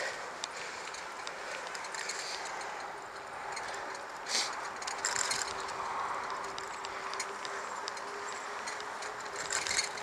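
A bicycle being ridden, probably across grass toward a paved path: a steady rolling hiss with scattered light clicks, and a short louder rustle about four seconds in.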